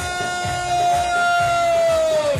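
Soprano saxophone holding one long, steady high note that sags slightly at the end, over Arabic band accompaniment with a steady beat.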